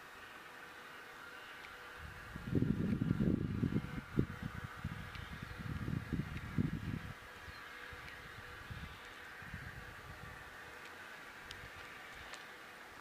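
A steady chorus of insects buzzing in the background. An uneven low rumble comes in about two and a half seconds in and is the loudest sound until about seven seconds in.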